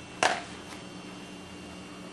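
A single sharp clack from a steel pinball striking the plastic-and-metal test fixture about a quarter second in, followed by a couple of faint ticks, over a low steady hum.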